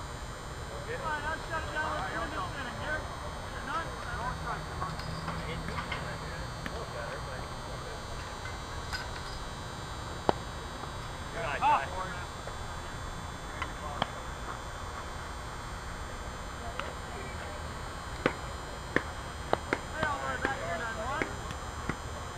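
Scattered distant voices of players calling across an open ball field over a steady background hiss, broken by a few sharp single knocks, the loudest about ten seconds in.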